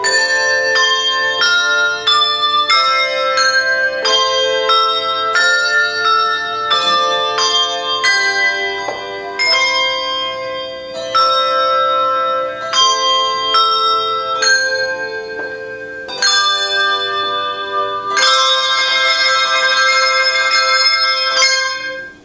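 A melody played on tuned bells, single struck notes ringing on into one another, ending with many bells sounding together in a sustained shimmering chord for about four seconds before it stops.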